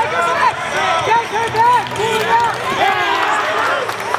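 Many voices shouting and talking at once across a large echoing hall, the overlapping calls of a tournament crowd with no single clear speaker.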